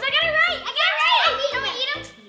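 Children's excited high-pitched squealing and shouting without clear words, over background music with a steady beat.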